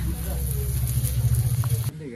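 Bara, lentil patties with egg, frying on a griddle over a clay stove: a steady sizzle over a low rumble. It cuts off abruptly near the end.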